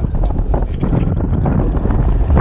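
Wind buffeting the camera microphone over open water: a loud, irregular low rumble.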